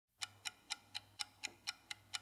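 Clock ticking: faint, sharp, even ticks, about four a second.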